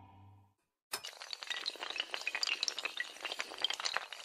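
The tail of a sustained music chord fades out, then after a brief silence, about a second in, a dense, continuous clatter of many small hard pieces clinking and toppling begins: an animation sound effect of rows of dominoes or tiles falling over.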